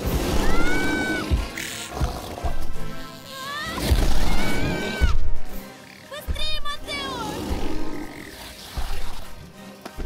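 Film score with a CGI dinosaur's calls over it: squealing cries that glide up and down, low roars, and a few heavy thumps.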